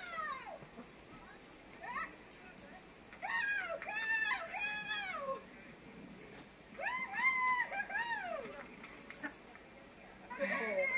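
A cat meowing repeatedly, each call rising then falling in pitch. There is a short meow about two seconds in, a run of about four around four seconds, and three or four more near seven to eight seconds.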